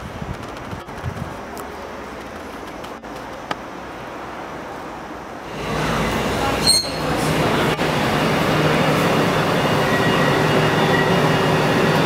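An electric multiple-unit passenger train in Southern livery pulls into the platform. After about five seconds of quieter surroundings its sound rises sharply to a steady hum, with a brief high squeal soon after, and it keeps humming as it draws to a stop.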